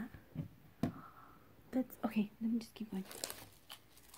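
Light handling knocks and rustles as a hollow plastic sugar-skull lantern is turned over and set down on a tabletop, with a few sharp clicks near the start and more near the end. A soft murmured voice comes in briefly around the middle.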